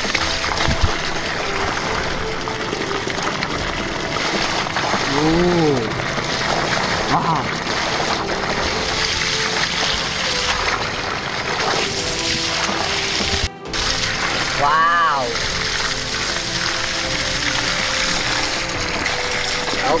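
Water gushing steadily from the open end of a plastic pipe, splashing onto grass and over hands held in the stream, with background music playing throughout.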